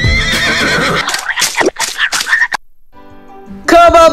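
Music with a horse whinny sound effect in its second half, then about a second of quiet before a sung jingle starts near the end.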